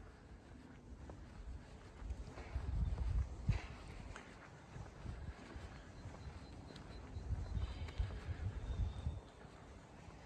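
Footsteps of someone walking on a pavement, with irregular low rumbling that is loudest about three seconds in and again near eight seconds.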